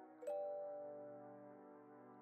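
Quiet background music: a soft, bell-like chord struck about a quarter of a second in, ringing on and slowly fading.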